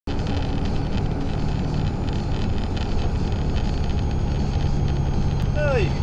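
Steady road and engine noise of a car driving along, heard inside the cabin, with a low hum. Near the end a man's voice breaks in with a shout.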